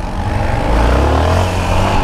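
Yamaha XT660's single-cylinder four-stroke engine accelerating hard, its pitch rising from about half a second in, with wind rushing over the microphone.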